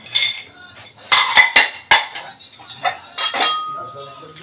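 Crockery and cutlery clinking and knocking: a quick run of sharp knocks about a second in, then a few more near the end, one leaving a brief ringing tone.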